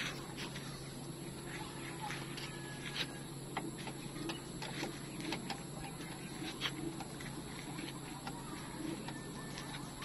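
Chickens clucking in the background, with scattered light clicks and taps throughout.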